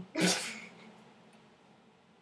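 A single sharp, breathy burst from a person, half a second long, right at the start and fading quickly.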